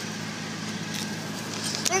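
Steady low hum inside a car cabin, from the car's engine or ventilation running, with a few faint light ticks and knocks.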